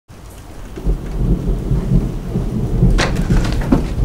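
Rain falling with a low rumble of thunder, fading in, and a sharp crack about three seconds in.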